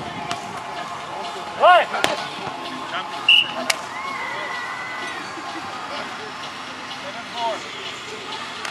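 Beach volleyball rally: sharp slaps of hands hitting the ball, twice, about two seconds in and again a little later, with a player's short shout just before the first. Voices carry on in the background.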